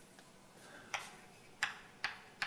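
Two short, sharp taps, one about a second in and one near the end, over quiet room tone.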